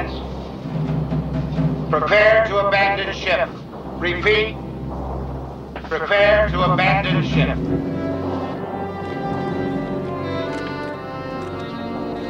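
A man's voice calling out in short phrases over a low steady rumble, then orchestral film score with sustained tones coming in about eight seconds in as the voice and rumble stop.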